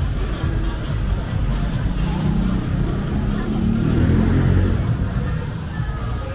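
A car driving past on a rain-wet street, its engine and tyre noise swelling to a peak about four seconds in, over city street hubbub.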